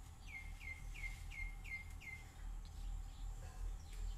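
A bird calling a quick run of six short notes, each dropping in pitch, over about two seconds.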